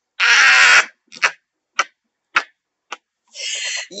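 A woman laughing: one long breathy laugh, then several short laughs that taper off, and a breathy sound just before she speaks again.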